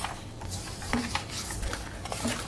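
Paper rustling: sheets of paper being handled and leafed through, in short irregular scratches.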